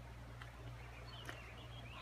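Faint outdoor ambience: a low steady rumble with a couple of soft clicks, and a faint high wavering bird call in the second half.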